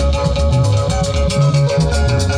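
Loud band music with guitar, bass and drums, with a quick, even beat of percussion strokes over a steady bass line.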